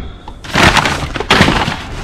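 Brown paper bags and cardboard rustling and crackling as items are pushed aside in a recycling bin. It starts about half a second in, in several loud surges.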